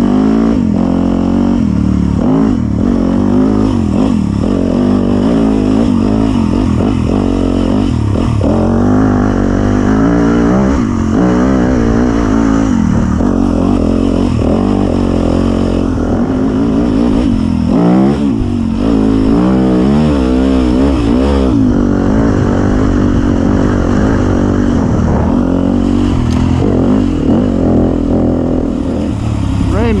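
Dirt bike engine under way on a trail, revving up and down over and over as the throttle is opened and closed.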